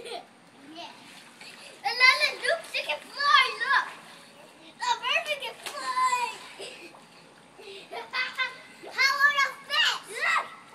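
Young children's high-pitched voices calling out while they play in a backyard pool, in several short bursts with brief pauses between them.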